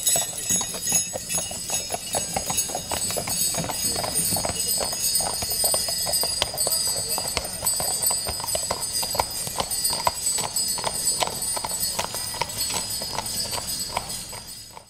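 Hoofbeats of Friesian horses pulling sleighs over a packed-snow road, the horses shod with long studs for grip on the ice, mixed with the steady jingling of sleigh bells on their harness.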